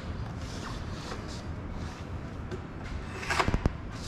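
Faint scratching of a pencil drawing a line across plywood, then a short cluster of sharp wooden knocks about three and a half seconds in.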